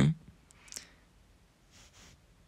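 The last syllable of a man's spoken word, then a pause that is nearly quiet apart from a couple of faint clicks and a soft hiss near the end.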